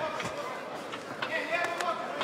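Arena crowd noise with indistinct voices calling out, and a few faint short knocks.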